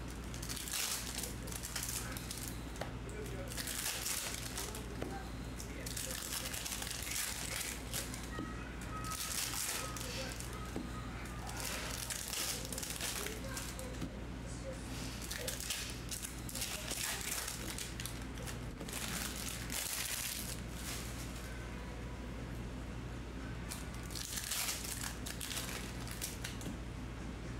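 Trading cards being handled, slid and dealt onto stacks, and the crinkle of a foil Topps Chrome pack wrapper. The bursts come every second or two over a steady low hum.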